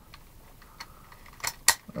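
Hard plastic clicking as a Transformers Powermaster engine is pushed into the bonnet of the Getaway race-car toy. A soft click comes first, then a sharp, louder snap near the end as the engine seats in place.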